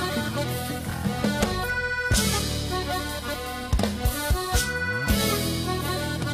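Cumbia band playing live: a piano accordion carries the melody over bass and drum kit, with a run of drum hits around the four-second mark.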